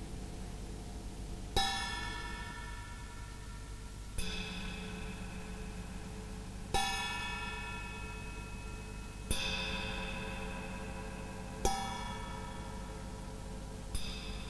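Music: a bell-like chime struck about every two and a half seconds, five times, each stroke ringing and slowly fading over faint sustained low tones.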